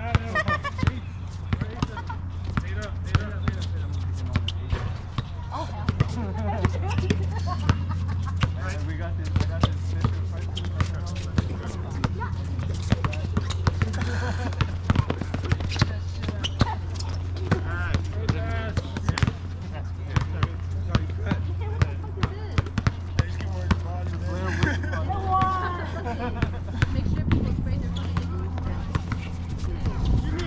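A basketball bouncing again and again on an outdoor hard court during a game, many sharp bounces throughout, with players' voices calling in the background.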